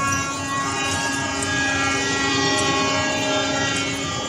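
Train horn sounding one long, steady blast of about four seconds that starts suddenly.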